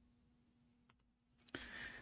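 Near silence, with two faint clicks, one about a second in and one about a second and a half in.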